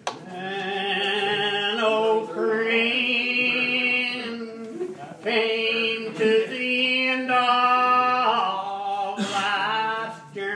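Old Regular Baptist hymn singing, unaccompanied, in long, slow, drawn-out notes. Phrases last a few seconds, with short breaks about two, five and nine seconds in.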